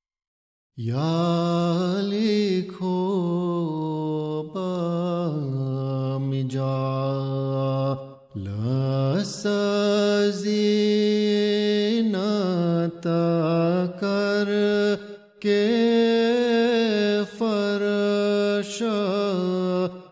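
A single voice chanting slowly in long held, wavering notes that slide between pitches, starting just under a second in after silence, with short pauses about 8 and 15 seconds in.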